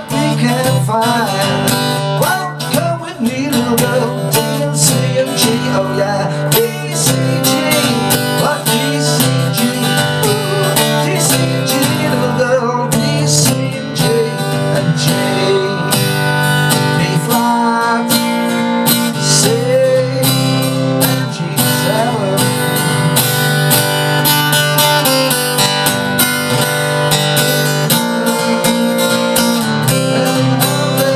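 Acoustic guitar strummed steadily, cycling through a D, C, G chord progression.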